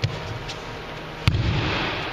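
An aikido partner thrown with a kotegaeshi wrist throw, landing in a breakfall on a judo-style mat: a light slap at the start, then a loud slap of the body hitting the mat a little past halfway, ringing on briefly in the hall.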